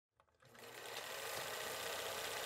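A faint, rapid mechanical clatter fading in from silence about half a second in.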